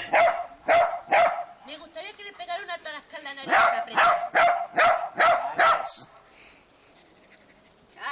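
Small dog barking at cats in two runs of sharp, repeated barks, about two a second, with a softer break between the runs. The barking stops about six seconds in.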